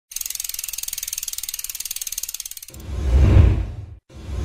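Fast, even ratchet clicking like a bicycle freewheel hub spinning, for about two and a half seconds. It gives way to a deep whoosh that swells and fades out.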